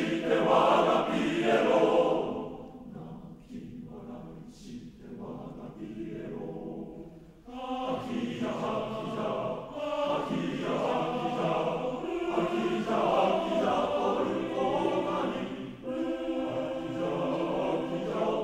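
Male voice choir singing unaccompanied in Japanese. Full and loud at first, it drops to a soft passage about two seconds in and swells back to full voice about seven and a half seconds in.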